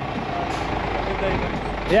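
Diesel engine of an articulated lorry's tractor unit running close by, a steady low drone as the lorry moves off.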